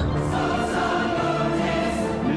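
Choir music holding one sustained chord at an even level.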